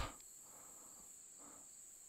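Near silence with a faint, steady, high-pitched chorus of crickets.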